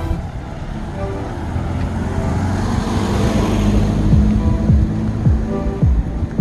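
Pickup truck driving past at low speed: engine and tyre noise swell to a peak in the middle and then fade. Music with deep, falling bass notes plays over it throughout.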